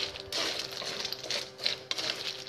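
Freshwater snail shells clattering against each other and a wooden spatula scraping a metal wok as the snails are stirred, in a run of irregular clicks and scrapes.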